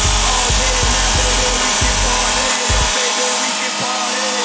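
Hip-hop backing music with a steady bass beat; the bass drops out for the last second or so.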